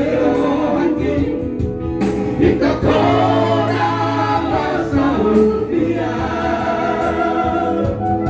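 Several men singing a song together into microphones, their voices amplified and blending.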